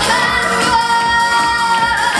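Female voice singing a Korean trot song into a handheld microphone over loud backing music, holding one long note through the second half.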